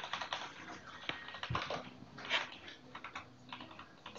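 Computer keyboard typing: irregular key clicks, in short runs with brief pauses.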